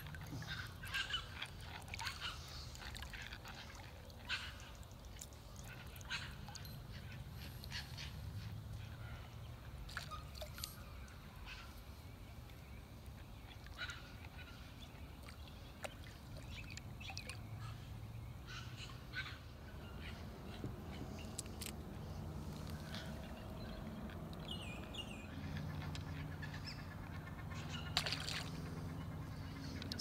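Outdoor river ambience: a low steady rumble with scattered bird calls and many small clicks and knocks, with a sharper knock near the end.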